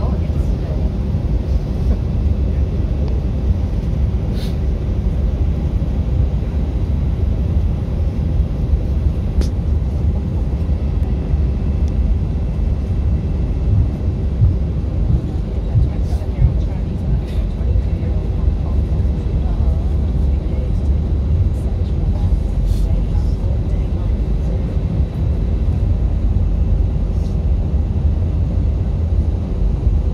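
Cabin noise of an Airbus A320-family airliner taxiing after landing: a steady low rumble of the engines and the rolling wheels, with a few faint clicks.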